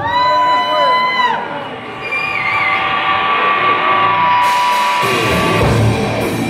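A single held yell from the audience, then a sustained, steady keyboard-like drone as a live black metal band opens a song. The full band, with drums and guitars, comes in near the end.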